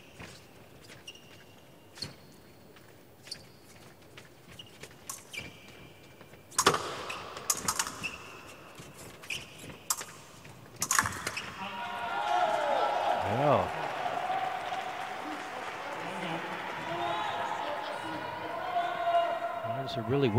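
Épée bout on the piste: scattered shoe squeaks and blade clicks, with a sharp clash about six and a half seconds in. From about eleven seconds, voices shout and cheer, including one long falling shout, as a touch is made.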